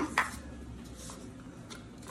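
A single short handling noise just after the start as the cinnamon-roll can's cardboard and wrapper are picked up, then quiet kitchen room tone.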